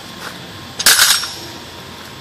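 A quick cluster of metal clinks and knocks about a second in, from the freshly pulled wheel hub assembly and slide hammer clattering against the concrete floor.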